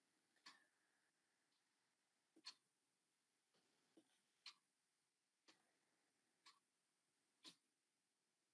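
Near silence: faint room tone with soft short clicks about once a second.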